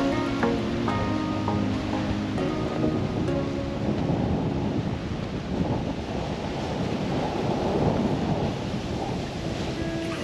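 Background music fades out over the first few seconds, leaving a steady rushing noise of wind on the microphone and surf breaking on a rocky shore. Music comes back in near the end.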